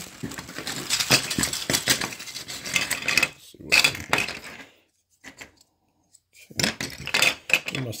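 Loose hard plastic model-kit parts, still on their sprues, clattering out of a plastic bag onto a table in a dense run of clicks. After a short quiet pause they click again as they are picked up and handled.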